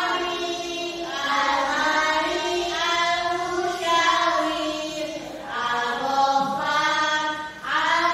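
A group of young voices chanting in unison, in long held phrases broken by short pauses.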